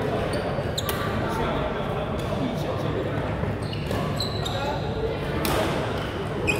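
Badminton rally in a large sports hall: sharp racket strikes on the shuttlecock, a loud one about a second in and another near the end, with short high shoe squeaks on the court floor over a steady murmur of voices.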